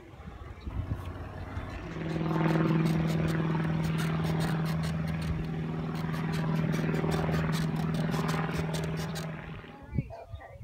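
Propeller aircraft engine running at a steady pitch with a fast ticking, coming in about two seconds in and dropping away near the end.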